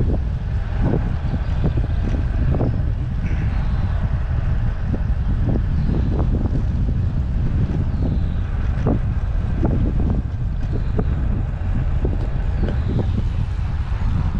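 Wind rushing over the microphone of a camera on a moving bicycle: a loud, steady low rumble with uneven gusts.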